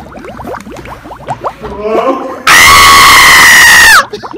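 A person's high, held scream starts suddenly about halfway through. It is so loud that it overloads the recording, and its pitch drops as it cuts off at the end.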